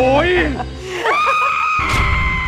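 A man cries out, then about a second in lets out a long, high scream held at one pitch, over background music with a low bass bed.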